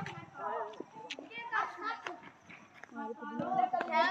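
Several boys shouting and calling out to each other during an outdoor ball game.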